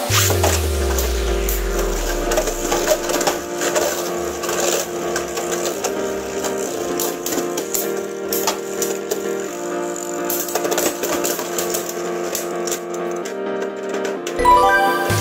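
Background music over the rattling and clicking of two Beyblade Burst spinning tops colliding in a plastic stadium.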